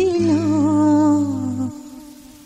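Closing bars of an old Telugu film song: one long held melodic note with vibrato, drifting slightly down in pitch over a steady low accompaniment. The accompaniment stops about three-quarters of the way through, and the note fades out near the end.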